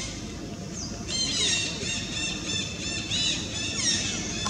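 Infant macaque squealing in a rapid run of high, arching calls that starts about a second in and keeps going, several calls a second, while it wrestles with another infant.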